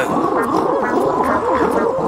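A chorus of cartoon fluffy-creature calls: many small voices overlapping, each a quick rise and fall in pitch.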